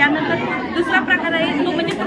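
Speech only: a woman talking, with chatter from other people behind her.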